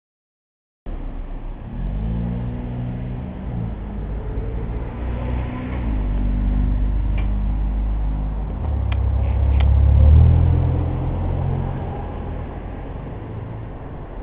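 Tuk-tuk (three-wheeled auto rickshaw) engine running after a brief silent gap at the start, its pitch rising and falling a few times and loudest about ten seconds in. A few light clicks come just before the loudest part.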